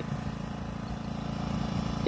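An engine running steadily, with a low, even hum.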